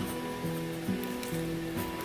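Soft instrumental background music: a slow line of held notes, each changing to a new pitch about every half second.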